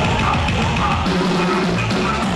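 Live cumbia band playing through a club PA: a drum-kit beat under held keyboard and bass notes, with no singing in this stretch.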